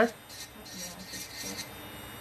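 Electric nail drill with a cuticle bit filing an acrylic nail near the cuticle: faint, scratchy grinding in short strokes that stops about a second and a half in.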